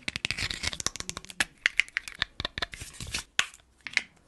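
Fingernails tapping, clicking and scratching on small plastic objects held close to the microphone: a fast run of sharp clicks, thinning out after the first second and a half.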